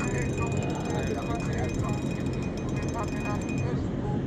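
Spinning reel's drag giving out rapid fine clicks for about a second, about two and a half seconds in, as a hooked catfish pulls line against the bent rod, over a steady low hum and faint voices.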